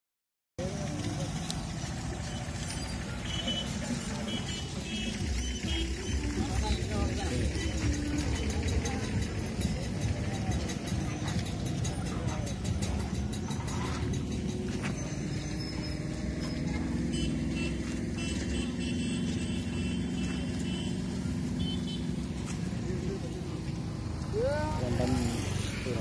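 A motor vehicle's engine and road noise, running steadily while travelling along a rough village road, with faint voices mixed in.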